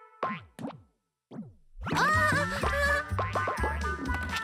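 Cartoon boing sound effects: three quick falling-pitch boings in the first second and a half, then a short silence. About two seconds in, upbeat children's music with a steady beat starts.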